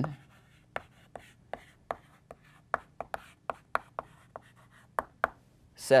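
Chalk writing on a blackboard: a quick, irregular string of short taps and scrapes, about three a second, as a word is written out.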